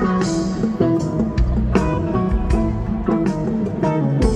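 Live rock band playing an instrumental jam, with an electric guitar lead over bass and drums.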